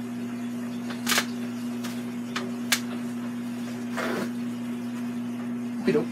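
A steady low electrical-sounding hum under several light clicks and taps, with a short rustle about four seconds in and a knock near the end.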